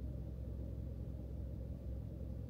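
Low, steady rumble of a car's idling engine heard inside the closed cabin.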